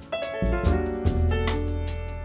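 Jazz piano trio playing the instrumental introduction of a ballad: piano chords over upright bass notes, with light cymbal strokes from the drum kit. A sustained chord comes in just after the start.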